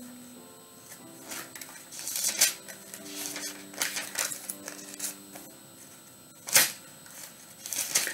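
Light clicks and rustles of hands handling things at a desk, with a few sharp clicks, the loudest about six and a half seconds in. Faint held tones run underneath.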